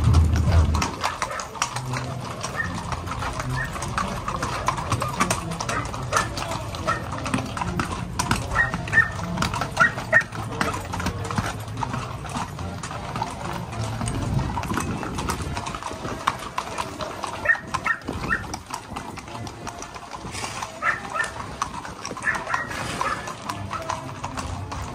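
Hooves of a group of horses clip-clopping on a concrete street as they walk, with voices in the background.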